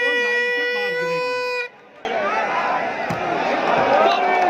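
A long steady horn-like tone holds one pitch for nearly two seconds over a man talking, then cuts off suddenly. Crowd noise and voices follow.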